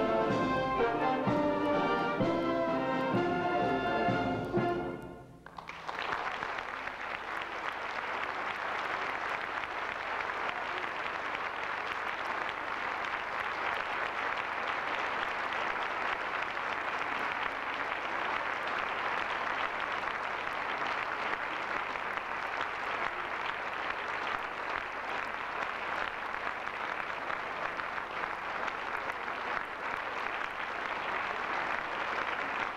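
A military brass band plays the closing bars of a piece, which ends about five seconds in. The audience then applauds steadily for the rest of the time.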